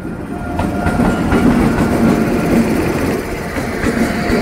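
Indian Railways WAP-7 electric locomotive and its passenger coaches passing close by, with a loud, steady rumble of wheels on the rails and irregular clacks. A faint steady whine sits over the rumble.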